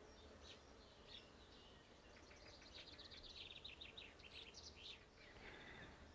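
Near silence with faint birdsong: scattered high chirps and a rapid trill about halfway through.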